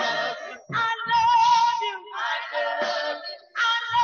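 Gospel praise team of women singing into microphones, amplified, in phrases that break off about every second, with short low bass notes beneath.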